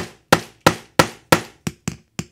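A claw hammer taps a metal snap-setting punch, a steady run of sharp metallic strikes about three a second, the last few lighter. It is setting a snap fastener through jacket fabric, struck from a new angle to correct a snap that went in slightly crooked.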